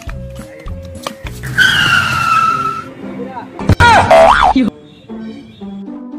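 Cartoon sound effects over background music. A whistle slides slowly downward about a second and a half in. Then comes a loud hit, followed by a wobbling boing-like effect that bends up and down in pitch for about a second.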